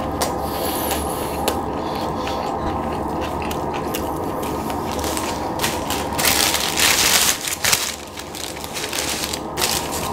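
Close-miked chewing of a forkful of poutine (fries with gravy and cheese curds), with many small mouth clicks over a steady low hum. About six seconds in, a louder hiss-like noise lasts for about a second and a half.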